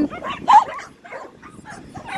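A dog gives one short, sharp yip about half a second in, followed by fainter, scattered yapping.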